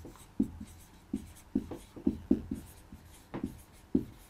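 Marker pen writing on a whiteboard: a run of short, irregular strokes as a word is written out.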